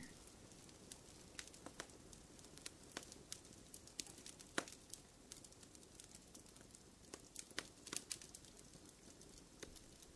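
Faint campfire crackling: irregular pops and snaps, a few a second, over a low hiss.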